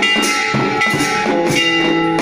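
Background music with a steady drum beat and sustained instrumental tones.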